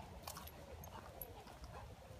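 Faint footsteps scuffing along a gravel path, with a few small scattered clicks.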